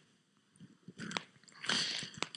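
Faint mouth clicks and a short breath from a man close to a microphone, in a pause between spoken phrases. Two small clicks come about a second in, then a soft breath near the end.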